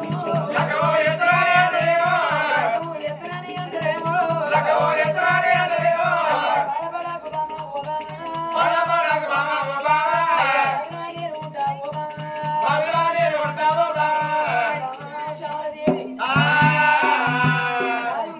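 Telugu Oggu Katha folk singing: phrases of sung melody over a fast, even percussion beat with a rattling sound. The accompaniment drops out briefly a couple of seconds before the end, then a loud sung phrase comes in.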